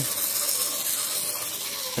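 Model train locomotive motors and wheels running on the track: a steady whirring hiss with faint steady tones underneath.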